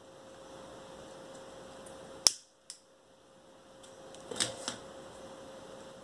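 A disposable lighter being clicked near a satin ribbon bow, with a faint hiss; one sharp click comes a little after two seconds, followed by a lighter one and a couple of soft clicks later on.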